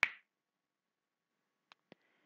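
A single sharp click, then quiet apart from two faint ticks near the end.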